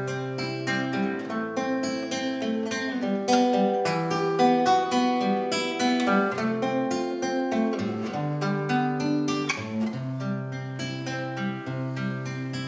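Nylon-string classical guitar played solo: picked notes over steady bass notes, the instrumental introduction before the singing starts.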